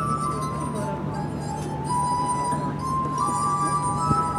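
Glass harp: wet fingertips rubbing the rims of liquid-tuned wine glasses, giving sustained, pure ringing notes, often two at a time. A slow melody steps down in pitch through the first two seconds and climbs back up in the second half.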